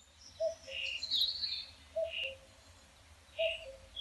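Birds calling: a short call repeats about every second and a half, with other chirps in between, over a low steady outdoor rumble.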